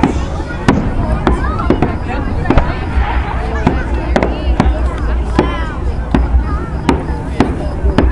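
Fireworks going off, about a dozen sharp bangs at irregular intervals of roughly half a second to a second, with people's voices in the background.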